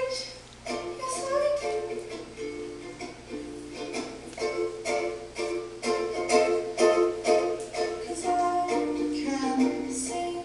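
Recorded song played back for lip-syncing, led by plucked or strummed strings, with sharp strums coming at a regular beat.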